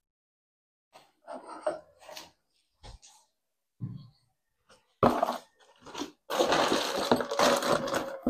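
Hands handling scooter cylinder-kit parts: scattered faint clicks and rustles, then a louder stretch of rustling and metallic clinking from about five seconds in, as the small steel cylinder studs are brought out.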